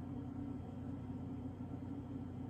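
A steady low hum of background noise, even throughout, with no speech.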